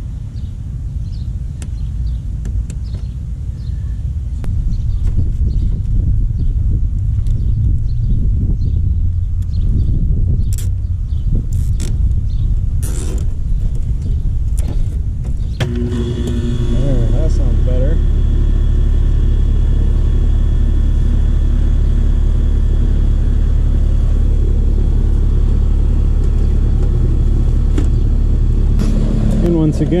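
Central air conditioner outdoor unit (compressor and condenser fan) starting about halfway through and then running with a steady low hum and a faint tonal whine. It is running normally now that the compressor and fan wires are on their correct terminals. Before it starts there are rumbling noise and a few sharp clicks of work on the wiring.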